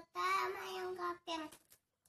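A young boy's voice in a drawn-out, sing-song phrase lasting about a second, followed by a short second phrase.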